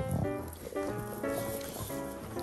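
An English bulldog gnawing and snuffling at a hard chew, with background music playing steadily throughout.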